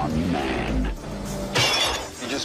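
A loud, short crash of breaking glass about one and a half seconds in, heard as part of an action-film soundtrack with a low rumble before it.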